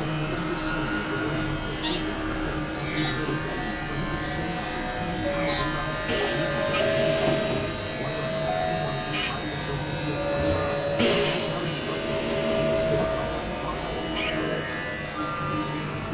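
Experimental electronic music of layered synthesizer drones. Steady high and low tones are held throughout, mid-range notes swell in and drop out, and short hissing bursts come every few seconds.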